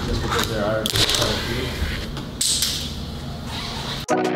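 Fingerboard's small wheels rolling and clacking over a wooden tabletop in a couple of rough bursts, with indistinct voices in the room.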